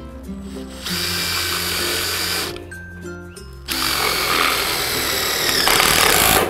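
Cordless drill driving a screw through a jamb into a steel carport edge beam, in two runs: the first about a second in, short, and the second longer and louder toward the end.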